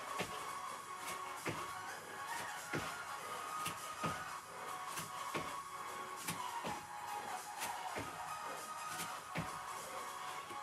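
Background music with the landings of squat jumps on a thin exercise mat over a carpeted floor, a short impact repeating about every second and a third.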